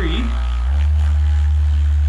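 Hyperice Vyper 2.0 vibrating foam roller's motor humming while held in the hands. A little under a second in, it steps up to its highest speed, and the hum jumps higher in pitch and gets louder.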